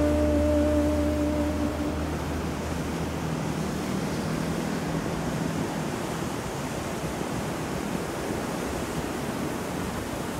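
Ocean surf washing onto a beach, a steady rushing wash of waves. The last held notes of a music track fade out over the first two seconds.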